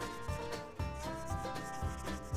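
Background music: held, sliding melodic notes over a steady low beat.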